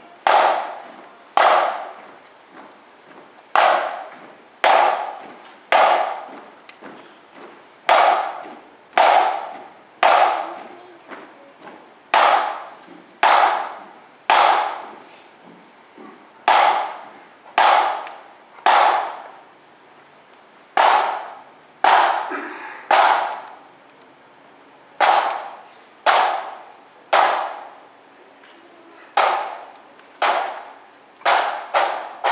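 A bell struck in groups of three strokes about a second apart, each stroke ringing out, with a pause of about two seconds between groups.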